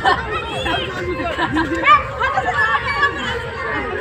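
Several children's voices chattering and calling out over one another, with louder calls just after the start and about two seconds in.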